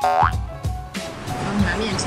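A quick rising cartoon boing-type sound effect over background music. The music drops out about a second in, leaving steady background noise.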